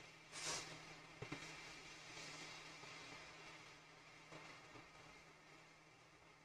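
Near silence: faint room tone with a low steady hum, a brief soft hiss about half a second in and a faint tick just after a second.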